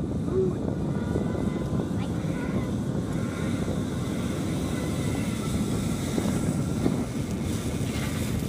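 Steady low rushing noise of wind on the microphone mixed with the whir of a zip-line trolley rolling along the steel cable as a rider comes in, growing slightly louder near the end as the rider arrives at the platform.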